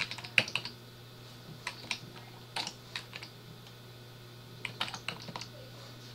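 Computer keyboard keystrokes: arrow keys and a few letter keys tapped in short bursts, a cluster of clicks near the start, a few scattered ones in the middle and another cluster near the end, as the cursor is moved through a line of code to correct a misspelling.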